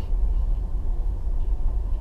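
Steady low rumble of a car driving slowly, heard from inside the cabin, with a brief faint click right at the start.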